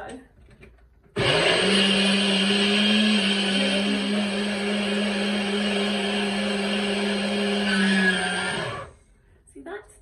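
Nutribullet blender motor running for about seven and a half seconds, starting abruptly about a second in and cutting off near the end, with a steady hum as it blends fruit and a little water into a smoothie.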